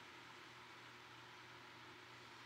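Near silence: room tone, a faint steady hiss with a low hum.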